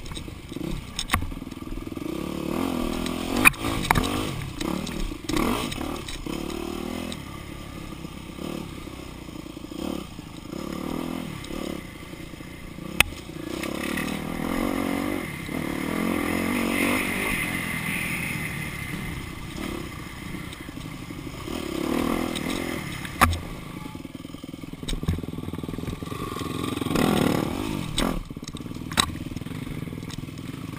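Dirt bike engine revving up and falling back over and over under the throttle as it is ridden along a rough woods trail. Several sharp knocks and some clatter come from the bike over the bumps.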